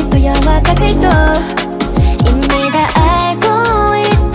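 A K-pop girl-group track playing, with a steady beat of sharp drum hits and deep bass notes that slide downward.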